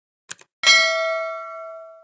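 Subscribe-animation sound effect: two quick clicks, then a single bright bell ding that rings and fades over about a second and a half, for the click on the notification bell.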